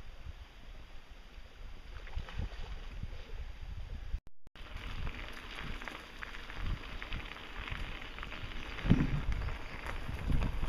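Wind rumbling on the microphone with low, unsteady noise. After a brief break about four seconds in, a louder, brighter hiss follows with scattered small knocks and rattles as the camera moves along a wooded trail, with a stronger knock near the end.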